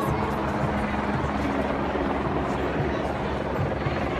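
A helicopter flying overhead, its rotor running steadily, heard over the voices of a crowd.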